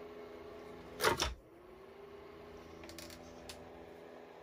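A single sharp knock about a second in as a hand handles the plastic guard of a Caframo Bora 12-volt fan, followed by a few faint clicks, over a faint steady hum.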